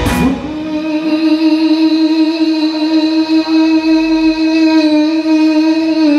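A band hit at the start, then an electric guitar holds one long steady note almost alone as the drums and bass drop away, in a live blues-rock band.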